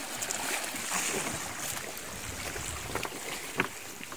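Sea water sloshing and splashing against the hulls of small wooden outrigger fishing boats, with a few light splashes, over a steady rush of wind on the microphone.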